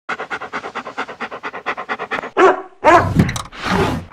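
A dog panting fast, about seven breaths a second. After about two seconds come louder whines that bend in pitch, mixed with scuffling as the dog paws at a wooden door.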